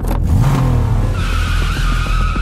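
A car engine revving up, then tyres squealing from about a second in.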